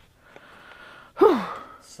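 A woman's sigh: a faint breath drawn in, then a short voiced out-breath that falls in pitch, just before she speaks again.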